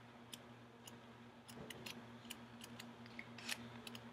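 Faint, irregular soft clicks and ticks of paper pages being flipped through in a paperback workbook, over a low steady hum.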